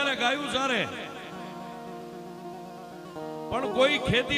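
Harmonium holding a steady chord of several notes, heard on its own between phrases of a man's narration, with a slight change of chord shortly before the voice returns near the end.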